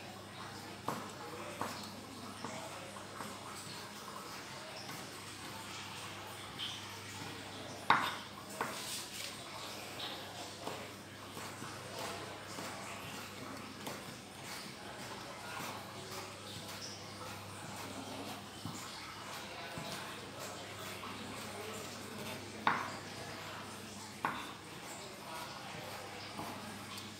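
Kitchen knife slicing wood ear mushrooms into thin strips on a wooden chopping board: irregular knocks of the blade on the board. A few knocks are sharper, the loudest about eight seconds in and again a few seconds before the end.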